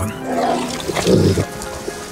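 Two short, rough animal calls over background music, one about a third of a second in and one just after a second.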